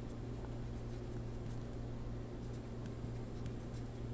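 Pencil writing on paper: faint, irregular scratching strokes as words are written out by hand, over a steady low hum.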